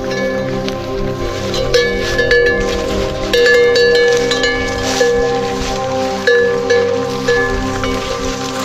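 Chime-like ringing tones struck irregularly, about once a second, over a steady bed of held tones.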